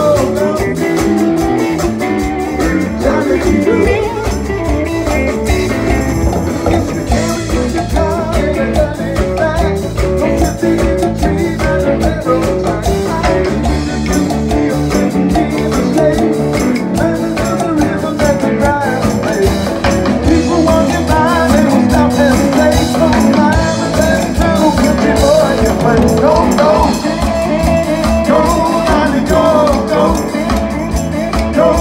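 Live band playing a rock-and-roll number: male vocal group singing over a drum kit and band, with a steady driving beat.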